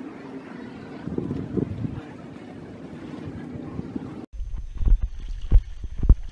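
Wind rushing across the microphone over open water. After a sudden change about four seconds in, it turns into heavier, irregular low buffeting thumps.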